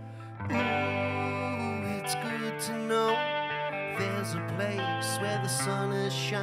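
Live rock band playing an instrumental passage: a held keyboard chord, then the full band with guitars and drums comes in louder about half a second in, with cymbal crashes.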